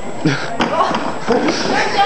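Several boys laughing, with a light knock about half a second in as a boy clambers over a stack of padded chairs.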